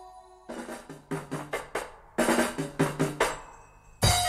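Drum kit fills opening a reggae track: two quick runs of snare and drum strokes, each about a second and a half long, after the last held chord of the previous tune fades out in the first half second.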